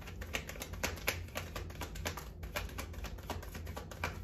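A tarot deck being shuffled by hand: a quick, irregular run of card clicks and slaps, several a second.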